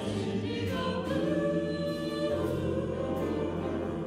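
A small mixed vocal group singing held harmonies with a jazz big band accompanying, the chord changing about halfway through.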